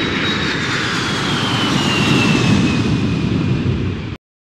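Aircraft engine fly-by sound effect: a steady engine drone with a thin whine that slowly falls in pitch as it passes.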